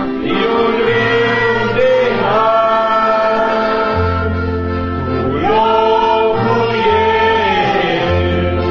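A church congregation singing a hymn in Romanian, in long held notes that step from pitch to pitch, over a sustained bass accompaniment.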